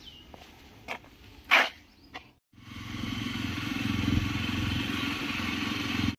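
Jawa 42 motorcycle's single-cylinder engine running steadily as the bike is ridden, beginning after a sudden cut about two and a half seconds in. Before the cut, a few light clicks and one short, loud noise about a second and a half in.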